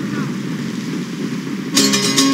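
Film sound effect of rushing wind with a low rumble. Near the end, music with a strummed guitar and a cymbal cuts in suddenly.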